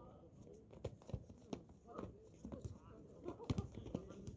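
Irregular thuds of a basketball bouncing and players' sneakers hitting a hard outdoor court during play, the loudest hit about three and a half seconds in, with players' voices calling faintly between them.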